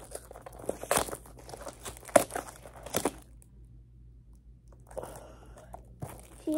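Packaging being crinkled and torn open by hand, in irregular bursts with a few sharp crackles. It pauses for about a second and a half past the middle, then the rustling starts again near the end.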